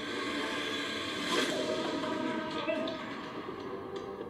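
Drama episode's soundtrack playing quietly: a steady hiss with faint, muffled voices underneath.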